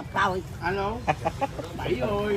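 Brief, indistinct voices in short bursts, with a few short sharp calls or clicks about a second in.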